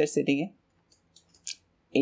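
A man speaking that breaks off about half a second in, followed by a near-silent pause with a few faint clicks and one short, sharp hiss about a second and a half in.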